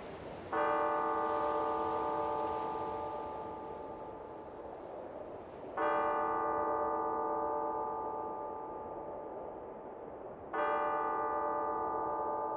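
A struck, ringing metal instrument sounded three times about five seconds apart, each stroke ringing on and slowly dying away. Under it a fast, regular high chirping fades out about three seconds before the last stroke.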